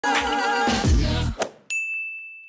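A short music sting, then near the end a single bell-like ding that rings on one steady tone and slowly fades.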